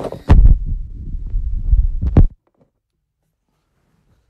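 Handling noise on a phone's microphone: loud low rumbling and thumps for about two seconds, ending in a sharp knock, after which the sound cuts out completely.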